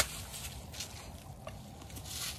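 A single sharp crack of a golf club striking the ball, right at the start. Then only faint outdoor background, with a few light ticks a little under a second in and again about halfway through.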